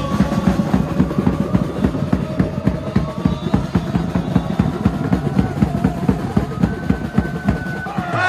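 Supporters' bass drums beating a fast, steady rhythm while the crowd sings a chant together.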